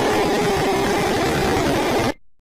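Loud, harsh, heavily distorted noise at a steady level, with a faint steady pitch running through it.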